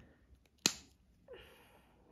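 A single sharp click about half a second in as the cap of a lipstick snaps shut onto the tube, followed by a softer, short handling sound.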